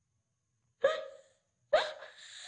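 A boy sobbing: two short, catching sobs about a second apart, breaking a silence.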